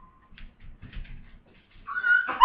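Faint, short squeaks and whimper-like sounds from the pet pig as it is being handled, with a louder pitched cry just before the end.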